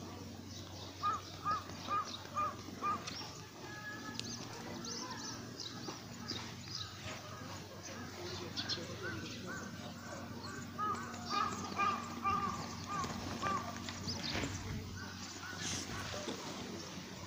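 A bird calling in two runs of short repeated notes, about two a second: one run a second or so in, another near the end, over a steady low hum.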